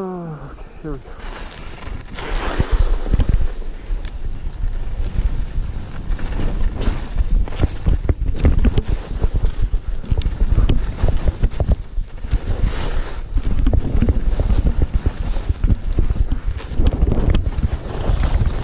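Skis scraping and chattering over choppy, tracked-out snow on a fast descent, with heavy wind buffeting on the camera microphone. A short falling vocal sound comes right at the start.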